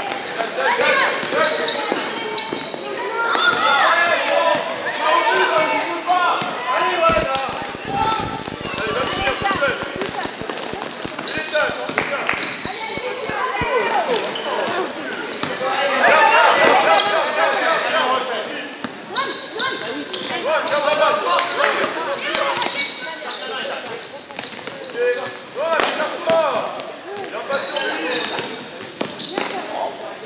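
Basketball bouncing on a gym floor during play, among the voices of players and coaches calling out, in a large sports hall.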